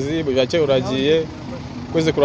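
A person talking, the voice rising and falling in short phrases with a brief dip about three-quarters of the way through, over a steady low hum.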